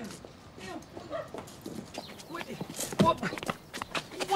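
A man's wordless vocal protests from under a blanket pulled over his head, mixed with a few knocks and scuffs, the loudest about three seconds in.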